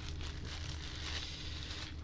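Clear plastic zip-lock bag and tissue paper crinkling and rustling softly as hands draw a tissue-wrapped lens out of the bag.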